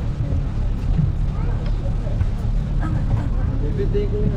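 Bus engine running, heard from inside the passenger cabin as a steady low rumble.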